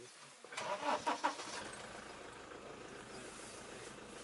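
Safari vehicle's engine starting: a second or so of cranking and catching, beginning about half a second in, then running steadily.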